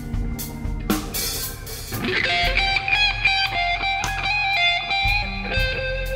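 Slow blues-rock band playing an instrumental passage: electric guitar lead with drum kit. There is a cymbal wash about a second in, and from about two seconds in the guitar plays high, long-held notes.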